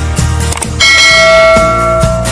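Intro jingle music with a steady beat; a bit under a second in, a bright bell chime rings out and holds, as in a subscribe-button bell sound effect.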